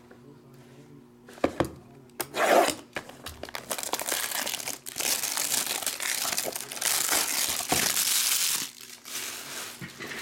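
Plastic shrink-wrap being torn and crinkled off a sealed box of trading cards: a few sharp clicks early on, then a steady crinkling for about five seconds from about four seconds in.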